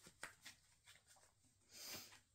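Faint hand-shuffling of a tarot deck: a few soft card flicks, then a short swish of cards sliding near the end.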